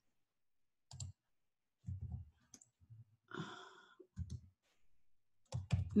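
Scattered, irregular clicks of a computer keyboard and mouse as code is typed, with a short breath about halfway through.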